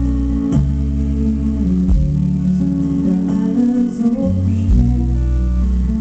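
Live band music: a strummed acoustic guitar over a deep, sustained bass line that changes note every second or so, with a few sharp drum hits.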